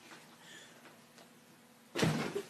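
Quiet room tone, with a couple of faint, brief sounds about a third of a second and just over a second in.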